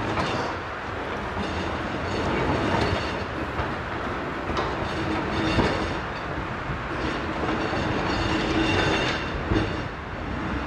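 Vintage electric freight tram rolling slowly over pointwork, its steel wheels rumbling and clacking over the rail joints, with a few sharp clicks.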